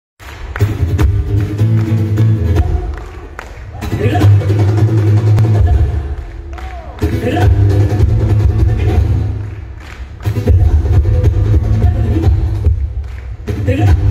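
Live band music played loud through a hall's PA, heavy in the bass, with a hand drum struck by hand. The music swells and dips in phrases of about three seconds.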